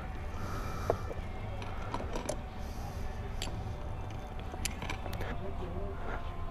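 Shop room ambience: a steady low hum with faint background talk and scattered light clicks and taps of objects being handled.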